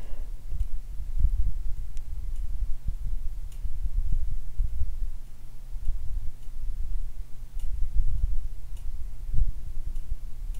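Low steady hum and uneven rumble of room noise, with a few faint, scattered ticks.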